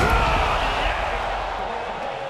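Basketball game audio from an arena: a sharp slam right at the start, then crowd noise and voices that fade down over the two seconds.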